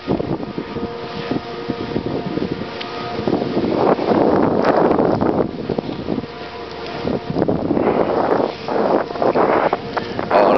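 Wind rushing and buffeting over the camera microphone while snowboarding downhill, growing louder from about four seconds in. A faint steady hum of several tones sits underneath at the start.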